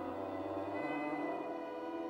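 Contemporary ensemble music for 23 players and electronics: a dense chord of held pitched tones, with a sliding, meow-like pitch glide in the middle register during the first second.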